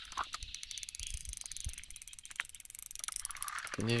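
Fast, even ticking of a fishing reel while a hooked grass carp is being played, with a few louder clicks.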